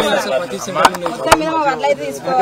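Men talking in a crowd, broken by three sharp clicks or knocks within the first second and a half.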